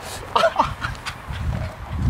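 A man's short cry of pain about half a second in, from kicking a heavy, magnet-covered football.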